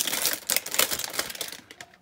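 Plastic packaging wrap crinkling and crackling in quick small clicks as it is handled and pulled open, dying away near the end.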